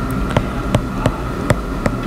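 A stylus clicking against a tablet screen while a word is handwritten, about three light taps a second, over a steady background hum.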